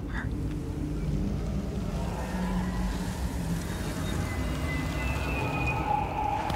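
Film soundtrack: a steady low rumble with sustained score notes over it, higher notes coming in during the second half.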